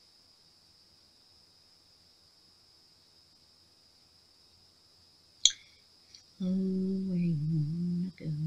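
A quiet room with a faint steady high-pitched whine, then one sharp click about five and a half seconds in. Near the end a woman's voice holds a drawn-out, hummed note that dips in pitch.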